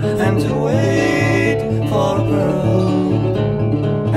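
Country-tinged band music: guitar over a steady, repeating bass line, with some notes sliding in pitch.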